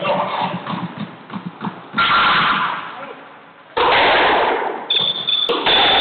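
Squash rally: a serve and then a few more loud cracks of the ball off racket and walls, each ringing on in the enclosed court. The first hit is about two seconds in, with three more following over the next four seconds.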